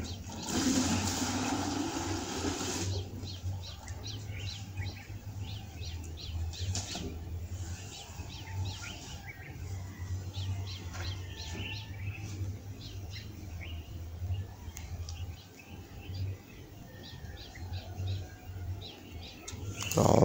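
Faint bird chirps, scattered and irregular, over a steady low hum. A burst of rustling noise fills the first few seconds.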